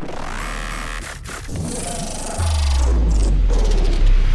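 Outro music with rising sweeps; a deep bass comes in a little over halfway through.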